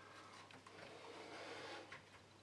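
Faint handling sounds of a small plastic cup of paint being settled on a vinyl record and let go: a soft rustle with a light click about half a second in and another near the end.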